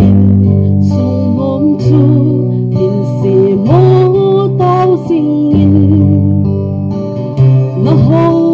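A woman singing a song into a handheld microphone over steady instrumental accompaniment.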